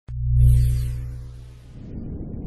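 Synthesized intro music sting: a deep tonal hit with a high shimmer that starts suddenly and fades over about a second and a half. Near the end a rumbling whoosh begins to build.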